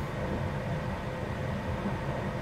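Steady low rumble and hum inside a car's cabin, the car's engine idling.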